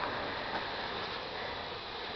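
Faint, steady background hiss with no distinct source, and a couple of light clicks.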